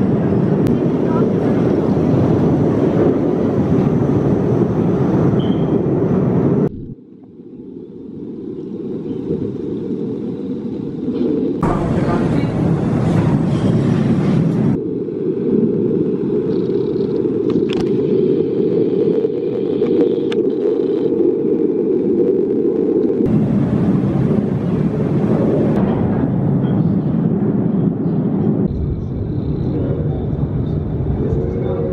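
Bobsled roller coaster train running along its open trough track: a steady low rumble, heard in several short clips joined by abrupt cuts. Voices are heard beneath it.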